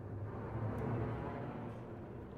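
Opera orchestra playing low, sustained notes between sung lines.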